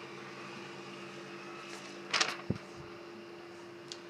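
Quiet steady background hum, with a short rustle and a low thump about two seconds in.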